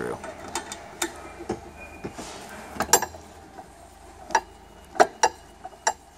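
Scattered light metallic clicks and knocks from a screwdriver working an alignment screw into a steel telescoping basketball pole, the loudest about five seconds in.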